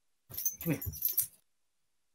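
A pet dog vocalising briefly, for about a second near the start, as a man calls "here" to it.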